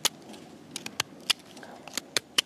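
Tanto knife blade whittling a slightly damp stick: short, sharp cutting snicks, about six in two seconds, as shavings are sliced off.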